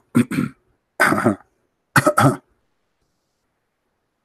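A man clearing his throat and coughing: three short bursts about a second apart, the last one a quick double.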